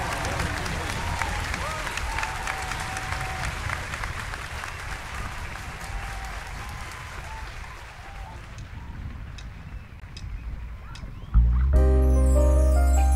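Audience applause with a few scattered calls, slowly dying away over about ten seconds. Near the end the band comes in suddenly and loudly, with a plucked qanun and a strong bass.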